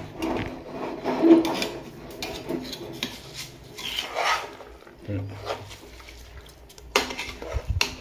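A steel ladle scraping and stirring rice through the curry in a metal pot, in irregular rasping strokes against the pot. There is a sharper knock near the end.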